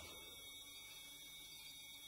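Near silence: a faint steady hiss with a low hum.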